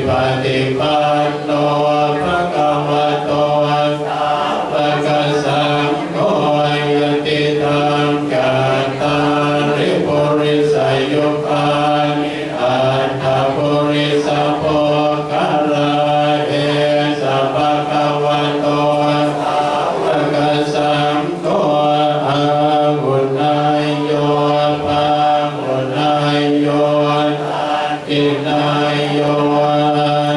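Group of Buddhist monks chanting in unison: a continuous near-monotone recitation, the voices held on a steady pitch with only brief dips.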